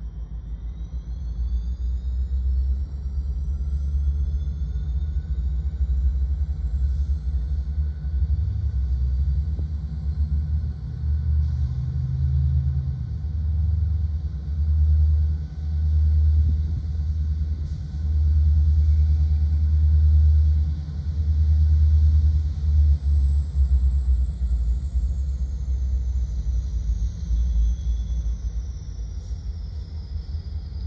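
Three EMD GP60 diesel locomotives, each with a turbocharged 16-cylinder 710 engine, approaching slowly with a deep engine rumble that swells and throbs louder through the middle. A high whine rises in pitch over the first few seconds, holds, and falls away near the end.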